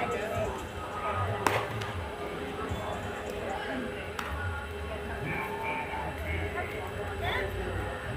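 Background voices and music, with one sharp pop about a second and a half in, a pitch smacking into the catcher's mitt, and a fainter click a little after the middle.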